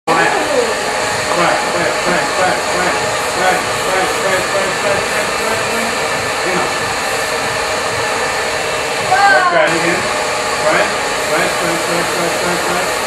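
Hand-held hair dryer blowing steadily, its hiss briefly cutting out in the highs about nine and a half seconds in.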